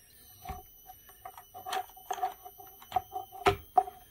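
Electronic beeping from the battery and inverter setup: a stuttering two-note beep that comes and goes, with several sharp clicks as the battery wire connectors are handled, over a faint steady high electronic whine.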